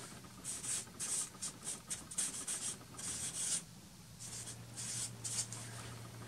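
Marker pen writing on a board: a run of short scratchy strokes as a line of words is written, with a short pause just under four seconds in.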